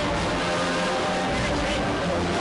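Band music playing steadily in held notes, with a crowd talking over it.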